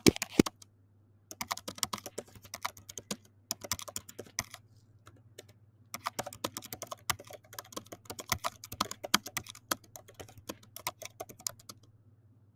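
Computer keyboard typing: quick runs of keystrokes as a sentence is typed, with a pause of about a second and a half in the middle.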